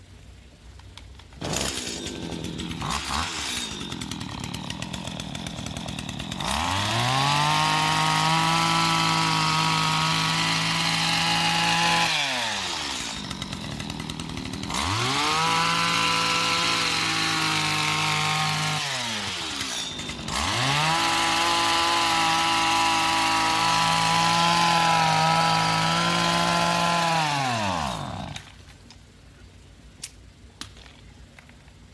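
Stihl FS85 two-stroke trimmer engine driving a hedge trimmer attachment: it starts about a second and a half in, idles, then is throttled up to full speed three times, each time rising to a steady high whine and falling back. It cuts out near the end, out of gas.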